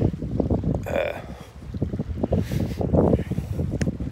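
Wind buffeting a phone's microphone outdoors, an irregular low rumble that rises and falls with the gusts.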